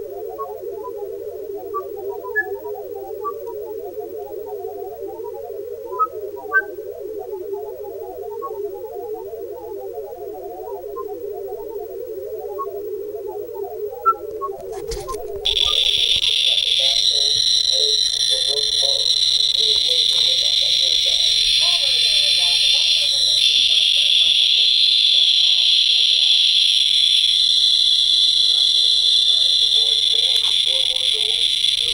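Gamma spectrometer's audio output: a dense random patter of low blips with scattered higher pips, the low sound mostly from technetium-99m gamma rays in a patient and the high pips from natural background radiation. About fifteen seconds in it cuts to a Radiation Alert Inspector EXP+ survey meter counting so fast near the Tc-99m patient, about 4,000 counts per minute, that its clicks run together into a louder, steady high-pitched buzz.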